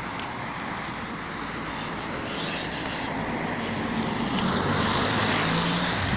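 A road vehicle going past: a steady rush of noise that swells to its loudest about four to six seconds in, with a low engine hum rising under it.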